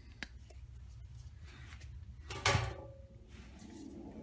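Handling noises on a countertop as a metal caulking gun with a silicone tube is picked up: a faint click just after the start, then one short, louder clatter about two and a half seconds in.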